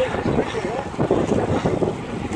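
Wind rushing over the microphone of a camera carried on a moving bicycle, with a faint indistinct voice about half a second in.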